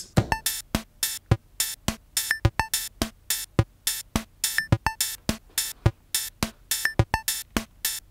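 Electronic drum beat of short, sharp sampled hits in an uneven pattern, about three a second, played on a small synthesizer-sampler.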